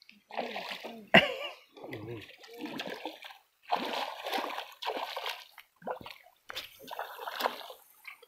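A hooked Hampala barb splashing at the water's surface in a string of irregular bursts as it is played on the line.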